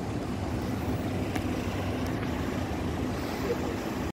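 Steady low rumble of wind buffeting the phone's microphone over the hum of distant city traffic.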